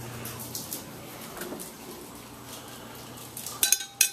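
Light clinks of a metal fork and dishes, with a short cluster of sharp clinks near the end as the fork and meat meet the glass bowl and wire rack of a Flavor Wave countertop oven.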